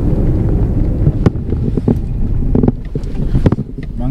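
Road noise inside a moving car's cabin: a steady low rumble, broken by several short knocks as the car runs over the road surface.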